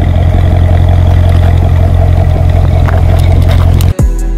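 Chevrolet Corvette V8 idling, a deep, steady exhaust rumble that cuts off suddenly just before the end.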